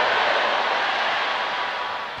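A large congregation shouting and praying aloud together: an even wash of many voices with no single voice standing out, easing slightly toward the end.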